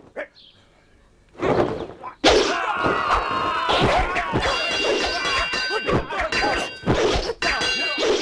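Staged martial-arts fight sound effects: a quick run of dubbed hit and whack impacts mixed with metallic clangs that ring on, starting about two seconds in after a near-silent opening.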